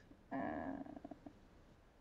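A woman's drawn-out, low, creaky hesitation "uh" that fades out about a second in.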